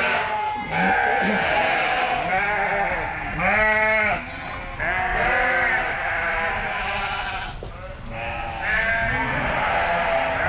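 A flock of ewes bleating, many calls overlapping one another, with one loud, longer bleat a little before halfway through.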